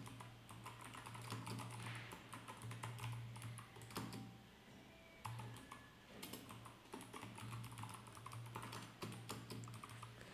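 Faint typing on a computer keyboard: irregular runs of quick key clicks with a short lull about five seconds in, over a low steady hum.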